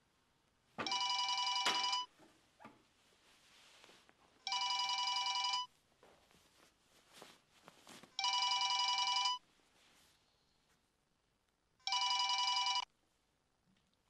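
A telephone ringing with an electronic ring: four rings of steady, chord-like tones, each a little over a second long, about 3.7 seconds apart, before the call is answered.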